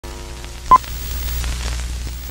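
Electronic intro sound effect: a steady low hum with static hiss and scattered clicks, broken by one short, loud beep just under a second in.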